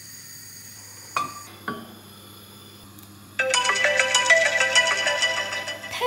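A phone timer alarm goes off suddenly a little past halfway, a loud electronic ringtone repeating fast: the cooking timer is up. Two light taps come before it.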